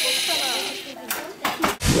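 Children's voices over the steady high whine of a small electric motor, likely the Lego Mindstorms robot running. In the second half come a few sharp knocks and then a single low thump near the end.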